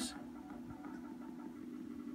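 Faint background music, an electronic track made with the Launchpad app, holding a steady low tone between lines of narration.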